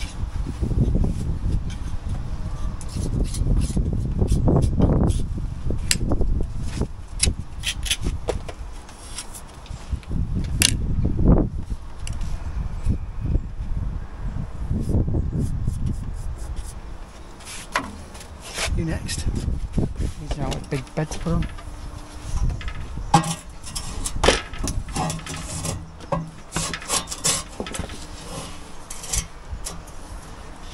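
Hand tools working at a steel lintel on brickwork: scattered clicks, knocks and scrapes of metal tools, thickest in the second half, over a low rumble.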